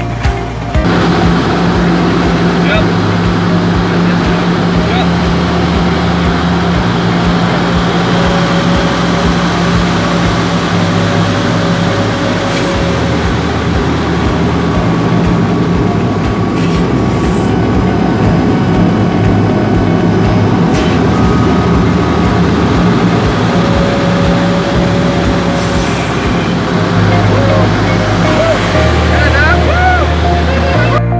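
Loud, steady drone of a light aircraft's engine heard from inside the cockpit in flight, with background music playing under it.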